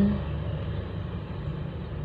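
A steady low background rumble with no distinct events, after a voice trails off at the very start.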